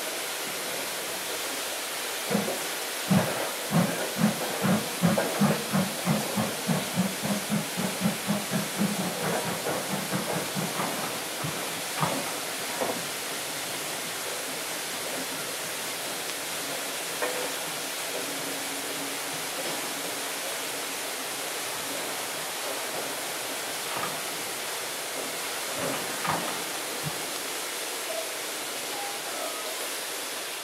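JNR Class C62 steam locomotive exhaust beats, played from a vinyl record. The chuffs start about two seconds in, quicken from about two to three a second and fade away within about ten seconds, leaving a steady hiss with a few faint clicks.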